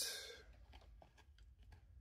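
Faint sliding and ticking of glossy trading cards being slid apart by hand, with a short hiss at the start that fades within about half a second.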